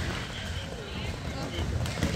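Indoor basketball game ambience: faint voices echoing in a large gym and players running on the court, with one sharp knock near the end.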